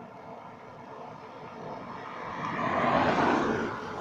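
An aircraft passing, its rushing engine noise swelling to a peak about three seconds in and then fading.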